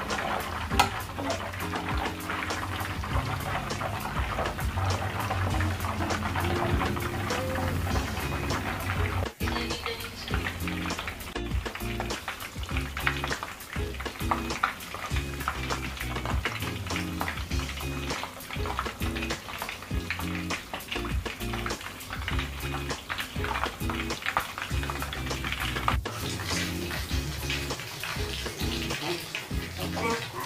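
A whole chicken deep-frying in hot oil, the oil bubbling and crackling with many small pops, under background music with a steady bass line.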